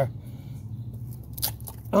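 Wood cracking as a small cleaver-style knife is forced down through a split piece of wood: a few sharp snaps, the loudest about one and a half seconds in, over a steady low hum.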